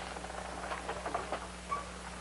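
Soft rustling and light scuffing of people moving and cloth being handled, scattered small sounds over the old soundtrack's steady low hum.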